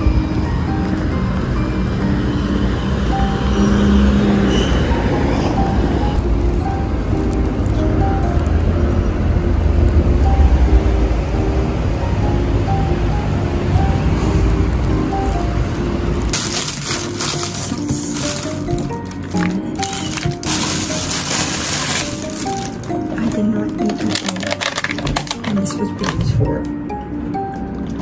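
Background music with a steady melody throughout, over a low rumble of street noise for the first part. From a little past halfway, crinkling of a plastic takeaway bag and a cardboard box being handled.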